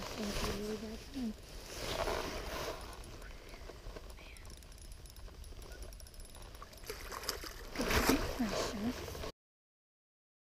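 Water swishing and light splashing around a landing net held in lake water as a smallmouth bass is released, with short wordless voice sounds in the first second and again near the end. The sound cuts off to silence just before the end.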